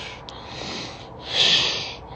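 A man breathing close to a phone microphone: a soft breath near the start, then a louder breath about one and a half seconds in.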